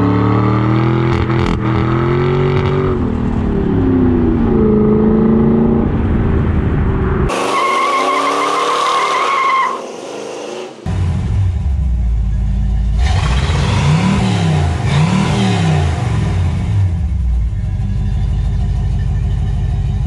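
A car engine revving up and down again and again, in sections that cut abruptly from one to the next. A high steady squeal runs for about two seconds, starting about seven seconds in.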